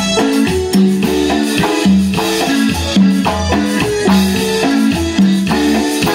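Live band playing an instrumental passage of Latin dance music through PA speakers: electronic keyboard and electric guitar over a steady bass line and percussion beat.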